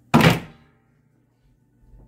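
The lift top of a wooden coffee table, moved by hand, lands with a single loud thunk that dies away within about half a second.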